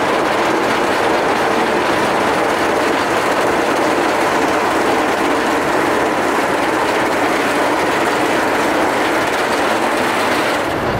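Twisted Timbers, a Rocky Mountain Construction hybrid roller coaster, pulling its train up the chain lift hill: a steady, rapid clacking of the lift chain and anti-rollback ratchets that holds at an even level.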